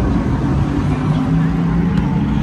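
A steady low engine drone whose pitch rises slowly, over outdoor background noise.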